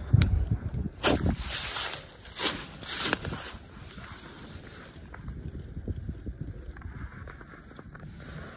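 Dry fallen oak leaves rustling and crunching underfoot, several scratchy steps in the first few seconds, then only faint rustles.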